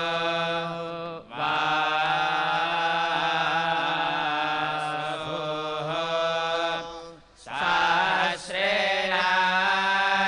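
Vedic priests chanting the Sama Veda (Kauthuma branch) into microphones: a melodic, sung recitation with long held tones, broken by short pauses for breath about a second in and again at about seven seconds.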